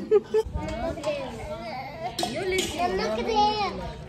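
Young children's voices, high-pitched chatter and calling out in play.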